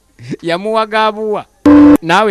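A voice sings a long held note, then near the end a loud, short, steady electronic beep sounds from a mobile phone, like a busy tone.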